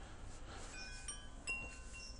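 Faint chime tones: several high, clear ringing notes that start one after another and overlap, one sounding a little louder about a second and a half in.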